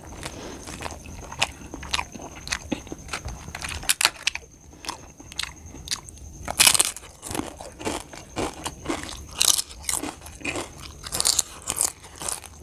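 Close-up eating sounds: fingers mixing rice and curry on a steel plate, then crisp fried papad bitten and chewed, with repeated sharp crunches and chewing. The loudest crunch comes about six and a half seconds in.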